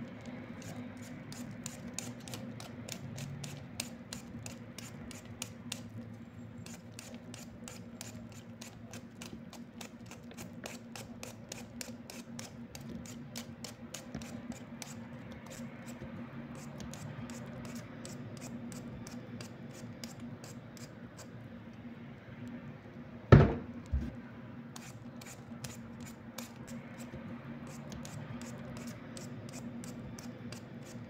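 Handheld vegetable peeler scraping the skin off a raw potato in quick repeated strokes, a few a second, over a low steady hum. About three quarters of the way through there are two sharp knocks, half a second apart.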